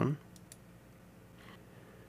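Two faint computer mouse clicks, about half a second in, against quiet room tone.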